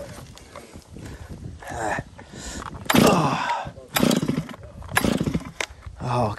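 Large chainsaw being started by hand: several short bursts about a second apart, each a cord pull with the engine firing briefly.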